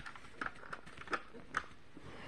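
Light clicks and taps of plastic toys being handled: a small plastic figure knocked against and set into a plastic toy vehicle, about five taps at uneven spacing.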